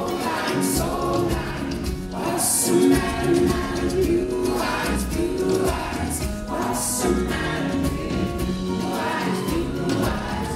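Live pop concert music heard from within the audience: an amplified band with singing, with bright high hits every couple of seconds.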